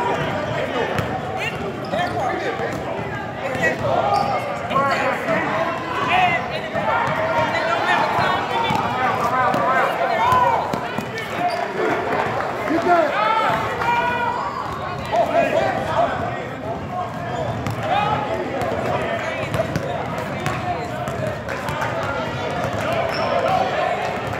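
Basketball bouncing on a gym floor during play in a game, over a steady hubbub of indistinct voices from players and spectators.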